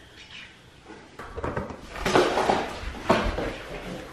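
Sock-footed steps brushing and sliding across a hard wood-look floor, starting about a second in, with rumble from a handheld camera being carried.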